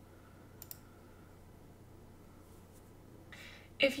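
A single computer mouse click, a quick sharp tick about half a second in, against quiet room tone.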